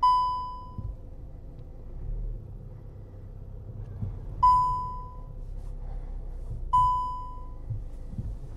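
Škoda Karoq's in-car warning chime sounding three times, a bright single ding each time that fades within a second, with the first two about four seconds apart and the third following about two seconds later. A steady low hum of the 2.0 TDI engine and cabin runs underneath.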